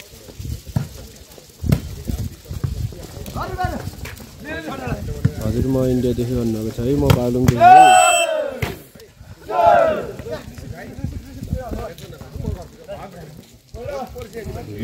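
Voices shouting and calling out during a volleyball rally, loudest in a long yell about eight seconds in and another shout a moment later. A few sharp knocks come in the first couple of seconds.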